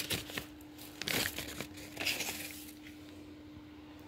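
Crumpled paper wrapping crinkling and rustling as hands pull a plastic toy pony out of it, in a run of short crackles over the first two seconds or so that then die away.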